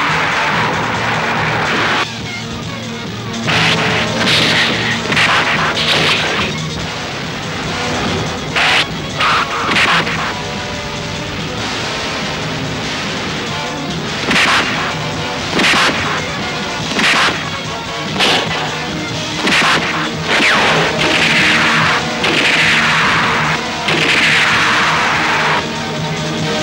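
Dramatic film score running under dubbed fight sound effects: repeated sharp blow or punch hits in irregular runs, and several swooshes that fall in pitch.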